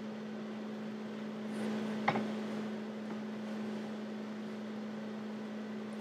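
Steady low electrical hum with background hiss, and a single short click about two seconds in.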